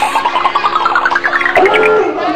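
Cartoon sound effects: a quick run of pulses climbing steadily in pitch, then a different wobbling sound about a second and a half in.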